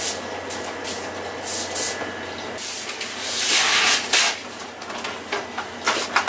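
Paper towel wiping down a plastic cutting board: a series of rubbing swishes with a few light knocks, the longest and loudest swish about three and a half seconds in.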